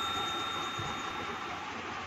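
Ringing tail of a bell-ding sound effect from a subscribe-button animation, fading away over the first second and a half, over a steady faint hiss of room noise.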